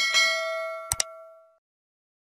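Bright bell-like ding ringing out and fading away over about a second and a half, with a sharp double mouse click about a second in: the sound effects of an animated subscribe-and-like button.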